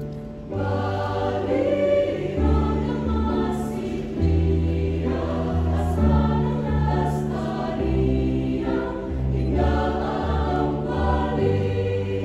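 Mixed choir of male and female voices singing in parts, holding chords that change every second or two over a low bass line.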